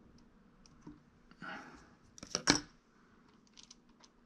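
Close-up handling noise from hands working with small tools and clay: a brief rustle about a second and a half in, then a quick cluster of sharp clicks, the loudest about two and a half seconds in, with faint scattered ticks around it.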